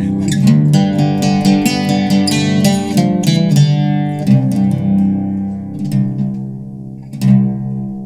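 Eastman mandocello played solo, its paired strings plucked in a run of low, ringing notes. The notes die away about six seconds in before one last struck chord rings out near the end.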